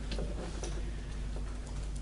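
A pause between spoken phrases: a steady low background hum with a few faint, short clicks.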